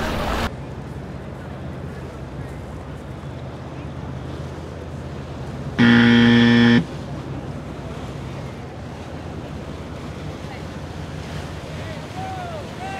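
A loud, harsh game-show 'wrong answer' buzzer sound effect, one flat buzz about a second long that starts and stops abruptly about six seconds in. Under it runs a steady background of wind and water.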